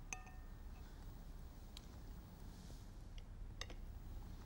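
Faint clinks of a spoon against a dessert dish: one short ringing clink at the start, then a few soft ticks spread through the quiet.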